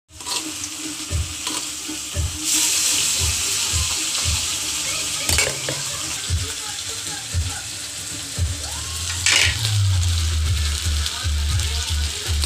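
Paarai (trevally) fish steaks shallow-frying in oil on a flat pan, sizzling steadily. The sizzle grows louder for a couple of seconds a few seconds in, with a few light knocks scattered through it.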